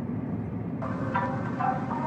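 Steady low road and engine noise of a car driving, heard from inside the cabin. Music with a melody of short notes comes in a little under a second in.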